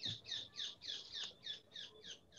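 A bird chirping faintly in a fast, even series of short high notes that slide downward, about four or five a second.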